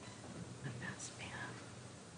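Hushed whispering: a few quiet words from about half a second to a second and a half in, over faint room hum.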